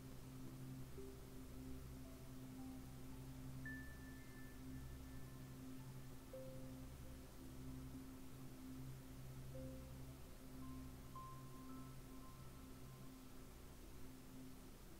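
Quiet background music: slow, sparse single notes, a few seconds apart at different pitches, each fading after it sounds, over a low held drone.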